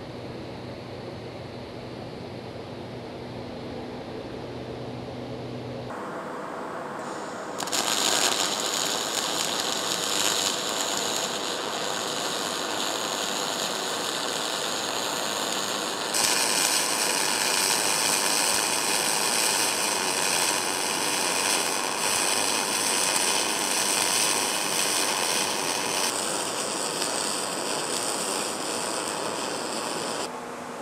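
Gas-shielded spray-arc welding with a 307-type metal-cored wire on a dedicated synergic curve. After a low hum, the arc's steady, dense hiss and crackle starts about eight seconds in and runs on, shifting in tone about halfway through and again near the end. It is a stable arc with little spatter.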